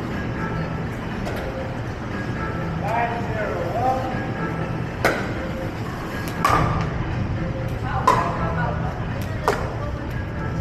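Pickleball paddles striking the plastic ball in a rally: a few sharp pops about a second or more apart in the second half, over a steady background of voices and music.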